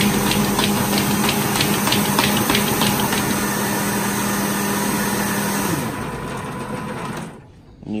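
Baum Ultrafold XLT air-feed paper folder running with its vacuum pump on: a steady hum with rapid, even clicking at about four a second for the first three seconds as sheets feed and fold. Near six seconds the hum slides down in pitch, and a little after seven seconds the machine falls quiet as it is switched off.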